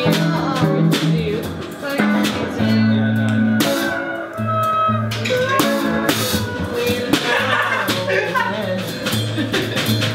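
Live band playing an electric blues jam: guitar over a drum kit, with held bass notes that change every second or so.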